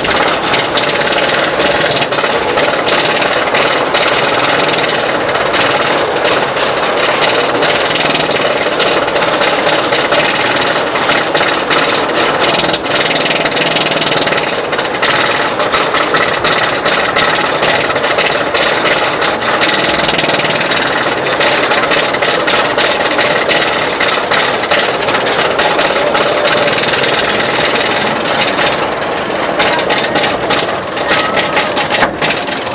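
Roller coaster chain lift carrying the train up the lift hill: a steady mechanical clatter of the chain with rapid, even clicking from the anti-rollback ratchet. The clicking grows sparser and more uneven near the end as the train nears the crest.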